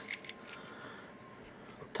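Quiet room tone with a few faint light clicks in the first half-second as fingers turn a small die-cast toy van in the hand.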